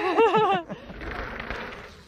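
A short spoken word, then soft breathy laughter that fades away over the next second or so.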